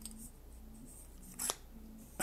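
Small clicks from a handheld LED flashlight being handled: a faint one at the start and a sharper, louder one about one and a half seconds in.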